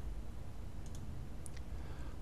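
A few faint computer mouse clicks, two close together just under a second in and one more about half a second later, over a low steady hum.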